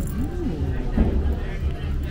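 People talking on a crowded boat dining deck, with music and a steady low rumble underneath.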